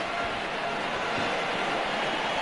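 Steady background noise of a stadium crowd at a football match, as heard on a TV broadcast.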